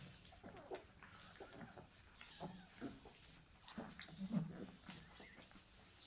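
Faint, scattered high squeaks and soft little grunts from 20-day-old Dogue de Bordeaux puppies nestled against their mother.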